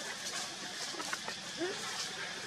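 A monkey gives a short rising whimper about one and a half seconds in, over a steady outdoor hiss with a few faint clicks.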